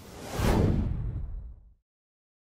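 Whoosh sound effect of an animated title card, swelling about half a second in and fading away before the end.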